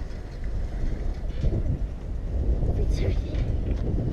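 Wind buffeting the microphone: a steady, gusting low rumble, with faint children's voices now and then.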